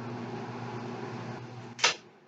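Gas furnace running with a steady electrical hum and rush of air, then a sharp click near the end as its power is switched off, and the hum stops while the air noise dies away.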